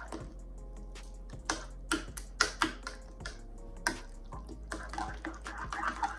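A metal fork stirring a thick, pasty mixture of shredded chicken and mashed potato in a ceramic bowl, with irregular clinks and scrapes against the bowl, several a second.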